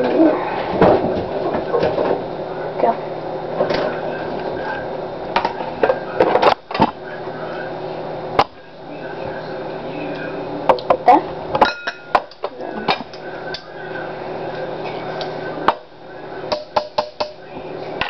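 A metal spoon scraping and knocking against a glass bowl and a plastic tub as cream cheese is scooped in, with a string of sharp clicks and taps and quick clusters of knocks near the middle and the end.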